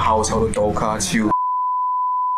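A voice speaking, cut off about a second in by a loud, steady electronic beep at a single pitch near 1 kHz. The beep runs on without a break.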